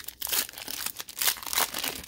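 A Panini Mosaic trading card pack's foil wrapper crinkling and tearing as it is pulled open by hand, in a quick run of sharp crackles.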